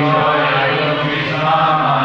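A group of voices chanting a line of a Sanskrit verse in unison, in a drawn-out chanting tone.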